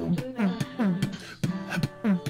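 Beatboxing: sharp mouth clicks and snares mixed with short hummed notes that slide downward in pitch, several in quick succession.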